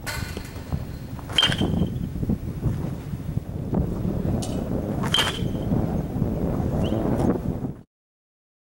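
Metal baseball bat hitting pitched balls twice, about four seconds apart, each contact a sharp crack with a short ringing ping, over wind on the microphone. The sound cuts off abruptly near the end.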